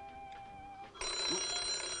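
Telephone bell ringing: an old desk telephone's bell starts suddenly about a second in and rings on with a fast metallic trill, over faint background music.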